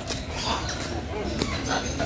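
Indistinct voices of people at moderate level, with no clear words.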